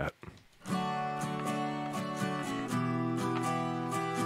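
Layered acoustic guitar tracks played back from a recording session, starting a little under a second in, with notes picked about three or four times a second. Four stacked takes of the same part, recorded on two different microphones.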